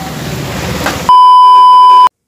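Light street traffic noise, then about a second in a loud, steady electronic beep, one unchanging high pitch held for about a second, that cuts off abruptly: an edit-inserted bleep tone at a cut in the video.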